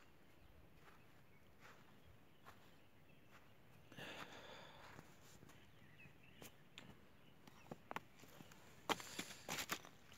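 Faint footsteps on frozen ground, with short crunches and clicks from about four seconds in and a run of sharper clicks near the end as the feet move onto loose flat stones.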